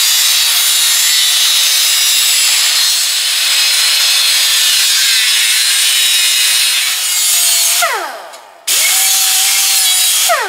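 Cut-off wheel on a power cutter slicing through a sheet-steel patch panel: a loud, steady grinding hiss. Near the end the cutter is let off and winds down with a falling whine, then is started again and runs free with a steady whine.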